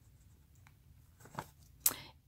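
Small handling clicks over a quiet room: two faint ticks, then one sharper click just before the end, as a paper list and a metal charm bracelet are moved in the hands.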